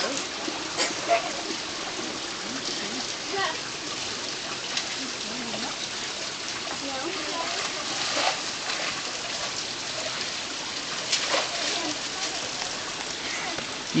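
Steady rush of a mountain creek, with scattered splashes from a child swimming and paddling in a rocky pool. Faint voices sound underneath.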